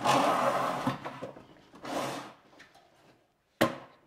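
A drywall sample board slid across a tabletop: a scraping slide of about a second, a shorter second scrape about two seconds in, and a sharp knock near the end.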